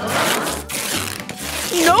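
Silver duct tape being pulled off the roll with a ripping sound, twice, with a short break between the pulls.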